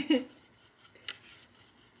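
A single light click about a second in, from a dry-erase marker being handled on a glass dry-erase board.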